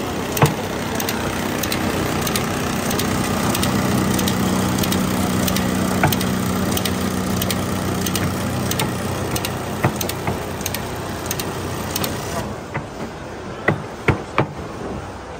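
GY-2 automatic paper counting machine running: a steady hiss and hum from its vacuum system, with light clicks every so often. The hiss stops about twelve seconds in, and a few knocks follow near the end.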